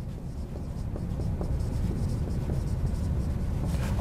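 A person writing by hand, the pen or marker scratching steadily with small ticks over a low rumble.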